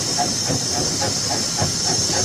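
Steam locomotive running along the line, with a steady hiss of steam over the continuous rattle of the moving train.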